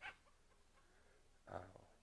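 Near silence in a pause between phrases, ended by a short spoken 'uh' about one and a half seconds in.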